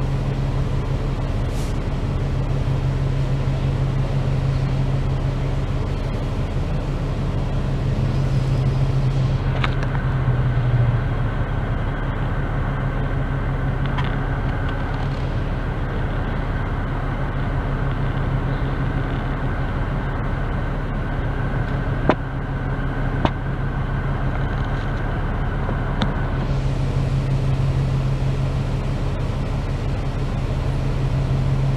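Double-decker diesel bus idling while stopped, heard from inside the upper deck as a steady low engine hum. A steady higher whine comes in about ten seconds in and stops a few seconds before the end, and two sharp clicks sound about a second apart past the middle.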